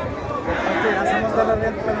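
A large crowd of men talking and shouting over one another, breaking into a chanted slogan, "nyaya beku" ("we want justice"), near the end.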